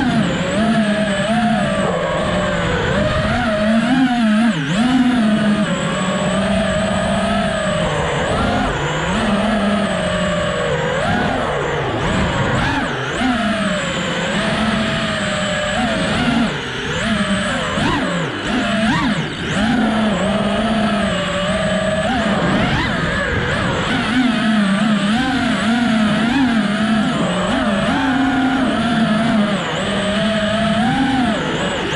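FPV quadcopter's electric motors and propellers whining through freestyle flying, the pitch rising and falling constantly with the throttle, heard from the onboard camera.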